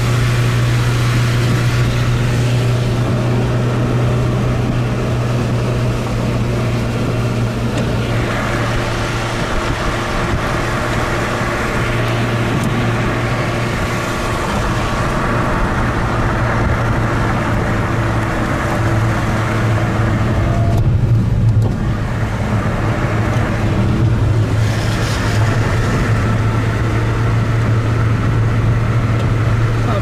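Car driving along a road, heard from inside the cabin: a steady low engine hum with tyre and road noise. The road hiss briefly drops away about two-thirds of the way through, then returns.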